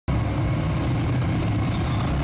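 Small motorcycle engine running as it rides down a street, with steady rushing wind noise over it.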